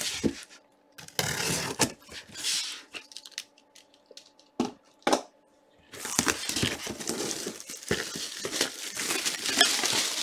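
Clear plastic shrink wrap on a cardboard box crinkling and tearing as it is ripped off: irregular rustling bursts, a short pause broken by two sharp clicks, then continuous crinkling over the last few seconds.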